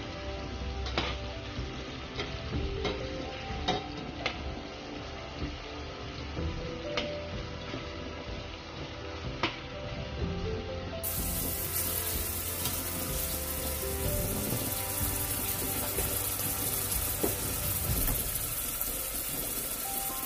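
Sliced onion and garlic sizzling in hot oil in a stainless steel pot, with a metal spoon clicking and scraping against the pot as they are stirred through the first half, then a steady sizzle.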